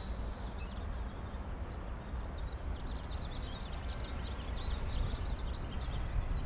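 A distant quadcopter's motors and propellers buzzing overhead, under a low rumble of wind on the microphone, with faint short high chirps through the second half.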